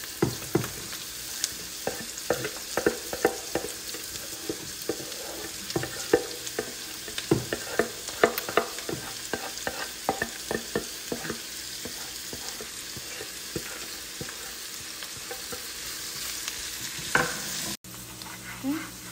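Chopped onions and peppers sizzling in a frying pan while being stirred, with frequent sharp clicks of the spatula and board against the pan that thin out after about twelve seconds. The sound cuts out briefly just before the end.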